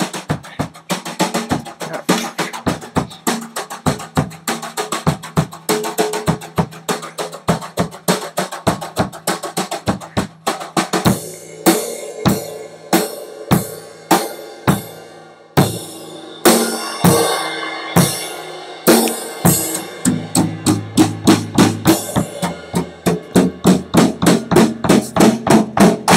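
Acoustic drum kit played live: kick drum, snare and cymbals in a fast, steady beat, with cymbal crashes ringing out from about eleven seconds in.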